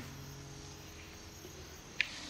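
Quiet background ambience: a faint even hiss, with the last sustained notes of the music dying away.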